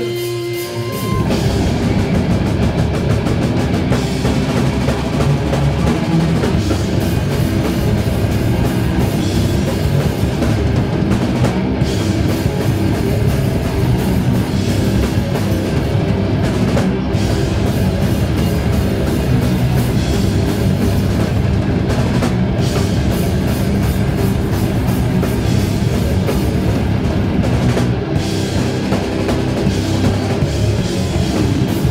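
Death metal band playing live, with distorted electric guitars, bass guitar and a drum kit. A held guitar note rings briefly before the full band comes in about a second in, and from then on the sound is dense and loud.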